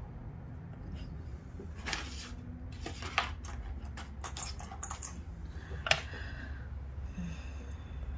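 Light handling noises from hands working craft materials on a cutting mat: a few short sharp clicks, loudest about two, three and six seconds in, over a low steady hum.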